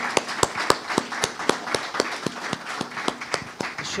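Small audience applauding, with individual hand claps heard distinctly.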